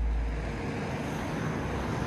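Steady road traffic noise, an even hiss of passing cars, under a low rumble that drops away about half a second in.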